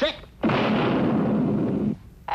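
Cartoon sound effect of a pistol being fired: a loud blast that starts about half a second in, holds for about a second and a half and cuts off suddenly.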